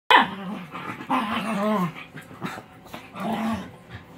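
Puppies play-fighting, one barking and growling: a sharp yap right at the start, then three drawn-out growling barks, the longest about a second in, dropping in pitch at its end.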